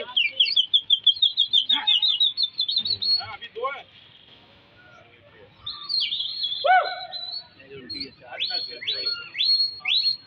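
A quick run of high chirps, about seven a second, rising slightly for about three seconds. After a lull, several whistles sweep steeply downward from high to low in the second half.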